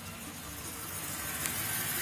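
6.0-litre Vortec V8 of a Chevrolet Silverado idling, heard from inside the cab as a steady low hum with a faint hiss over it.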